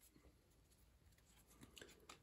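Near silence: room tone, with a few faint soft ticks near the end from a stack of trading cards being handled.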